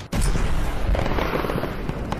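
Battle sound effects: a dense crackle of gunfire and blasts over a low rumble, starting with a sudden hit.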